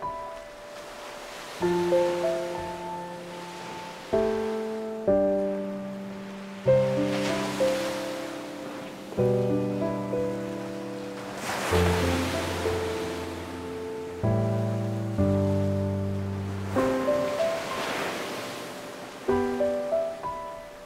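Slow, gentle piano music, a new chord struck every couple of seconds and left to ring out. Beneath it, the wash of surf on a beach swells and fades a few times.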